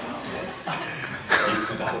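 A single cough about one and a half seconds in, over a low murmur of voices.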